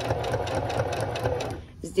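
Domestic electric sewing machine running steadily at speed, its needle stitching a binding strip onto the quilted edge of a bedspread. It stops about a second and a half in.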